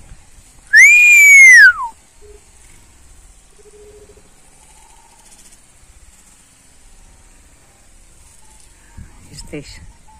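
One loud, mewing whistled call in the style of a common buzzard's cry, about a second long near the start: it rises briefly, holds, then falls steeply in pitch. A few faint short sounds follow near the end.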